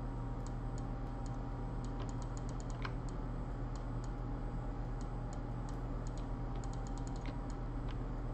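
Irregular light clicks of computer keys being tapped, a few in quick runs, over a steady low electrical hum.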